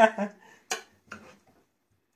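Metal spoon clinking against a stainless steel dish while layered biryani rice is turned over: two sharp clinks less than half a second apart, the second fainter, then a faint tap.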